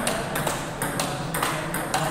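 Table tennis balls clicking against bats and tables: a string of sharp, uneven clicks, several a second.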